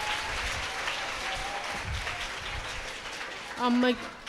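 Crowd of people applauding, the clapping gradually dying down. A woman's voice briefly speaks near the end.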